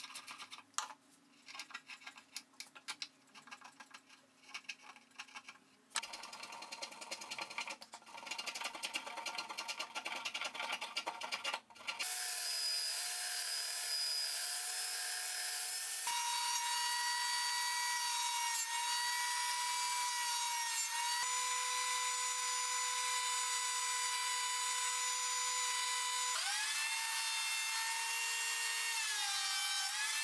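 Hand scraping and rasping strokes on a wooden instrument neck for about twelve seconds, then an electric bench belt sander running steadily with a whine, its pitch shifting a few times and sagging near the end.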